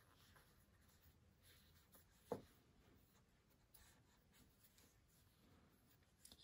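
Near silence with faint rubbing and scratching of yarn drawn through the stitches by a metal crochet hook as single crochet is worked. One short, soft thump a little over two seconds in is the loudest sound.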